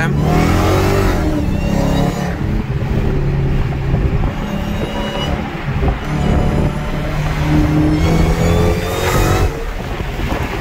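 Dodge Charger SRT Hellcat's supercharged 6.2-litre HEMI V8 at hard full-throttle acceleration, heard from inside the cabin. Its pitch climbs, drops back at each upshift, and climbs again several times, with a thin supercharger whine above the engine note.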